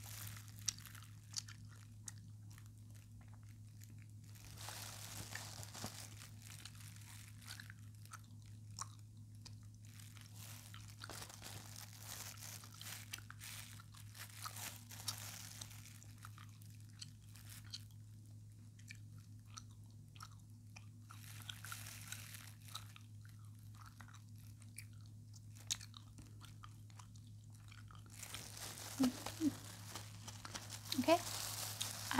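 Faint, close-up crackling and small clicks from ASMR hand, instrument and mouth sounds, coming and going in soft stretches, over a steady low electrical hum.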